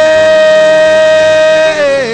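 A man's voice holding one long, steady sung note in a worship chant, sliding down slightly near the end, over a soft sustained musical backing.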